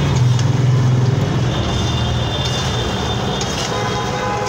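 A metal spatula stirring and scraping potato and raw-banana pieces around an oiled kadhai, with a steady low rumble underneath that is strongest in the first half.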